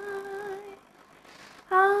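A woman singing a Bengali song unaccompanied. A held note trails off about a second in, and after a short pause a new, louder held note begins near the end.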